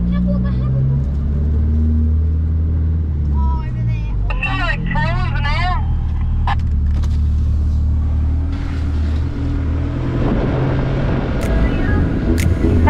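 Four-wheel-drive engine running under way, heard from inside the cabin: a steady low drone whose note shifts about three to four seconds in. A voice is heard briefly around the middle.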